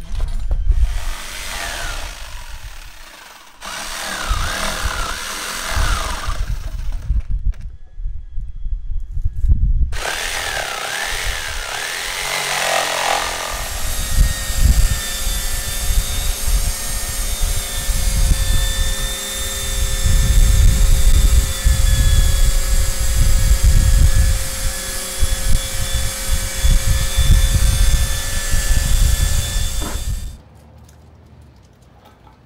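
Electric power tools working on a boat hull in several short stretches with abrupt breaks, then from about halfway a long steady run of a power tool and shop vacuum with a constant motor whine.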